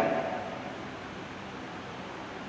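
A pause in speech: the last spoken word dies away in the hall's echo during the first half second, leaving a steady, faint hiss of room tone.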